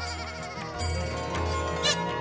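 Background music: sustained tones over a low bass, with a brief sharp sound near the end.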